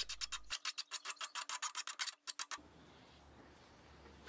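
Steel hand file rasping across the sawn end of a 9.5 mm steel bolt in quick short strokes, about six a second, deburring the sharp edges left by the hacksaw cut. The strokes stop about two and a half seconds in.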